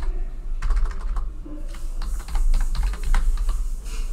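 Typing on a computer keyboard: an irregular run of keystroke clicks as a word is typed in, over a steady low hum.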